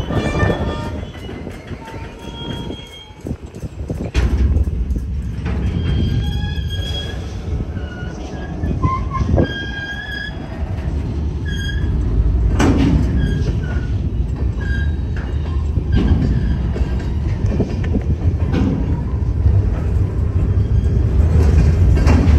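Loaded freight train of open-top hopper cars rolling through a road grade crossing: a steady low rumble of the wheels, with clicks as they cross the rail joints and brief high wheel squeals now and then. The rumble dips about three seconds in and then grows louder toward the end.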